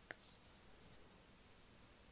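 Faint tap and scratching of writing on a tablet's glass screen in the first half second, then near silence with room tone.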